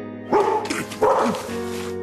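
A dog barking twice, loud and short, about a third of a second and a second in, over background music.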